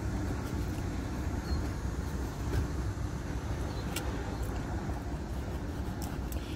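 Steady low hum of a car heard from inside its cabin, with a couple of faint clicks about two and a half and four seconds in.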